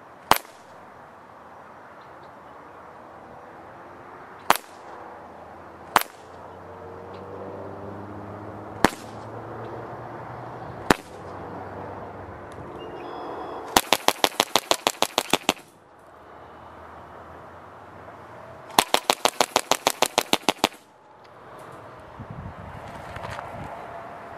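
Evanix Max .25-calibre bullpup PCP air rifle firing: five single shots spaced one to four seconds apart, then two full-auto bursts of about two seconds each at roughly ten shots a second.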